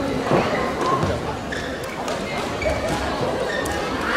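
A badminton rally in a large hall: several sharp hits of rackets on the shuttlecock, with footfalls on the court and voices in the background.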